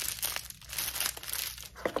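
Plastic crinkling and rustling as a makeup brush set and its clear vinyl pouch are handled, a busy, crackly run of small rustles.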